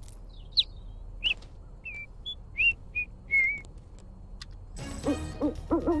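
A small bird chirping: a string of short, high chirps and whistles, some sliding up or down in pitch. About five seconds in, a pop song with singing starts.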